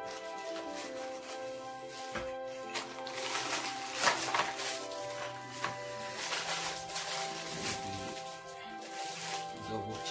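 Background music playing throughout, with hands handling a small cardboard box and its plastic packaging: scattered rustles and knocks, loudest about four seconds in.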